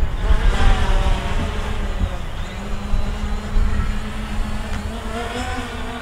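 Hubsan Zino quadcopter's brushless motors and propellers whirring as it descends and flies back close to the pilot, several pitches shifting up and down together as the motors adjust, over wind rumble on the microphone.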